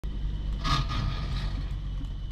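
A low, steady vehicle rumble like street traffic, with a brief brighter swell just under a second in.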